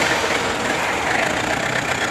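Steady, even background noise of an outdoor location, a continuous rushing hum with no distinct events, in a pause between lines of dialogue.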